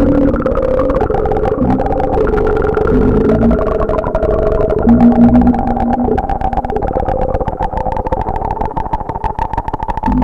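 Electronic music: sustained synthesizer notes over a fast pulsing texture. Heavy bass notes come in short patches in the first half, and the low end drops away in the second half.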